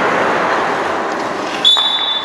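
Skate blades scraping across rink ice: a long hiss that slowly fades. About one and a half seconds in, a short, steady, high-pitched whistle blast.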